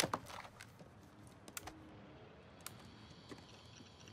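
Sharp plastic clicks of a Dell laptop being handled: the lid is opened and the power button is pressed. The loudest click comes at the start, and a few single clicks follow about a second and a half and nearly three seconds in.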